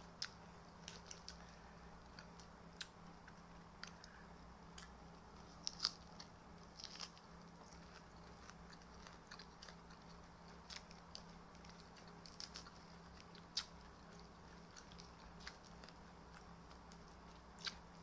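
Close-mouthed chewing of crunchy raw salad vegetables: faint, scattered crunches and mouth clicks over a faint steady low hum.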